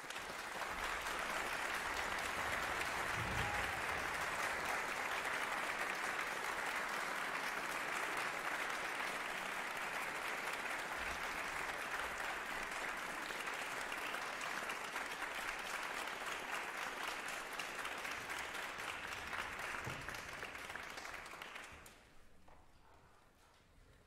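Concert-hall audience applauding steadily, the clapping dying away near the end.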